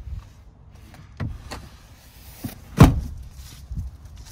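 Several dull thumps and knocks inside an SUV's cabin, about five in all, the loudest about three seconds in.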